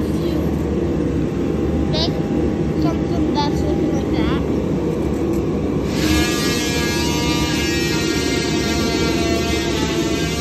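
Steady low machinery hum and rumble. About six seconds in, a high steady whine with many overtones joins it.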